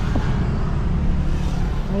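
Steady low rumble of a Suzuki Ertiga's engine and surrounding road traffic, heard from inside the car's cabin as it creeps forward.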